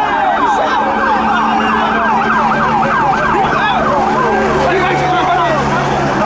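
Police car sirens: one in a fast yelp, about five up-and-down sweeps a second, with other sirens overlapping. After about four seconds the yelp gives way to several slower wailing sirens sounding together.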